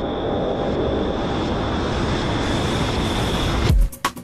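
Noisy ambient build-up in a techno DJ mix: a dense wash of noise with a steady high tone, slowly growing louder. Just before the end a heavy kick drum comes in as the beat drops.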